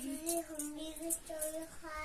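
A high voice singing a wordless sing-song tune: a string of short held notes stepping up and down.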